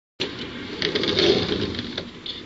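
Rustling and knocking noise from a person moving right beside the camera, with a few short clicks in the first second.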